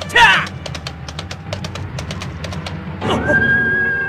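Cartoon soundtrack: music over a run of quick hoofbeat-like clicks, with a loud falling cry just after the start. About three seconds in, a long steady high tone and a rush of noise come in.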